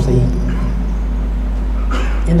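A pause in a man's speech over a steady low hum. A word trails off at the start and the next word begins near the end.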